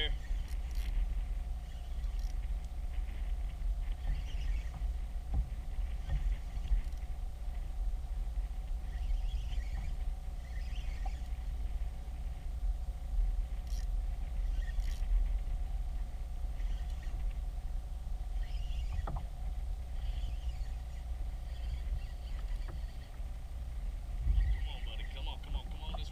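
Wind buffeting an action camera's microphone on open water, a steady low rumble throughout.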